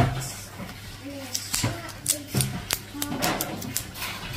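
A paper ice cream pint being turned in the hand, giving several sharp clicks and taps, with a voice in the background and a low steady hum.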